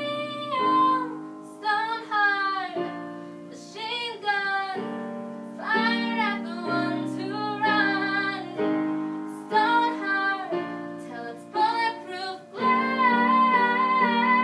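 Upright piano played in sustained chords, with a young female voice singing a melody over it in phrases.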